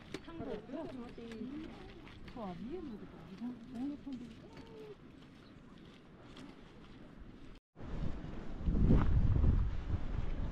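People's voices talking, with faint ticks behind them. After a sudden cut near the end, loud wind buffets the microphone.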